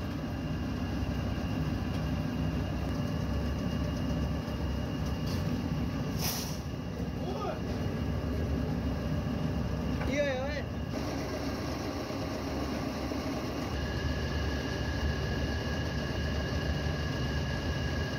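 Steady machine drone of a plate-moulding press and its running motor, with short snatches of a voice about seven and ten seconds in. A thin steady high tone joins the drone about fourteen seconds in.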